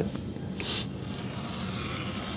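An X-Acto craft knife drawn along a wooden yardstick, making a light first scoring cut in cardboard to set a groove: a steady scraping hiss starting about half a second in.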